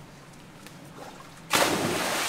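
A person jumping into a swimming pool: a sudden, loud splash about one and a half seconds in, continuing as a spray of water.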